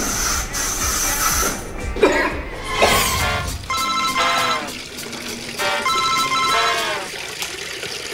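A telephone ringing twice, each trilling ring just under a second long and about two seconds apart.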